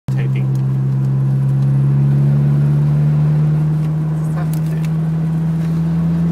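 Toyota MR2 AW11's mid-mounted 1.6-litre twin-cam four-cylinder engine running at steady cruising revs, heard from inside the cabin as a steady drone over road noise, with a few faint rattles a little past halfway.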